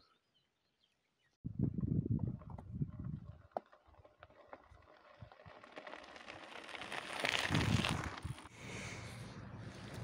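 After about a second and a half of silence, bicycle tyres crunch and rattle over loose gravel with a few sharp stone clicks as a loaded touring bike approaches. The noise is loudest about seven to eight seconds in, as the bike passes close by.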